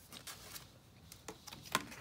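Quiet paper handling: faint ticks and light rustling as a sticker is smoothed onto a planner page and a sticker book sheet is lifted and turned, with one slightly sharper tick near the end.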